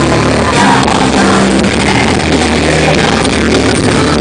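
A rock band playing live, loud and continuous.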